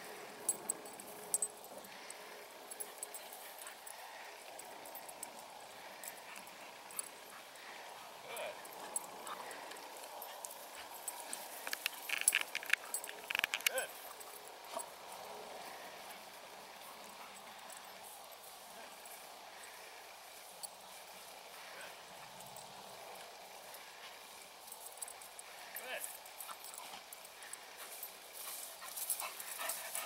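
German Shepherd whining softly at intervals while working close at heel, with a cluster of louder whines about twelve to fourteen seconds in.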